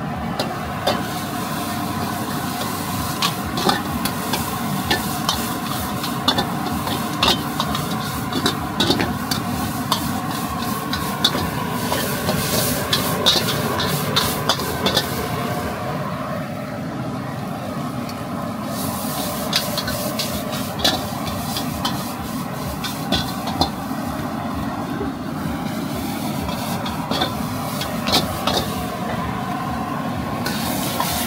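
Rice noodles stir-frying in a wok over a gas burner: steady sizzling under frequent sharp clacks and scrapes of a metal ladle against the wok.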